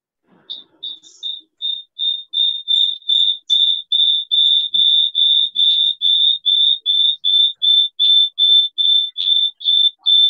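A high-pitched electronic beeper sounding rapidly, about three short beeps a second on one unchanging pitch. It starts about half a second in and grows louder over the first two seconds, then holds steady.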